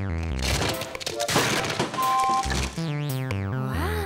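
Cartoon music and sound effects: a quick descending run of synthesizer notes, then a dense crackling rattle of many small clicks, a short two-tone beep, another descending run of notes and a pitch slide near the end.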